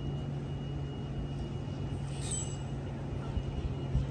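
Steady low mechanical hum of a running engine or machine, with a brief high squeak about two seconds in.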